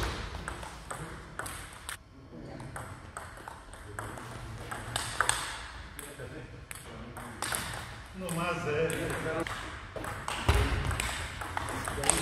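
Table tennis ball clicking sharply off the paddles and the table in quick rallies, in a gym hall. A man's voice can be heard partway through.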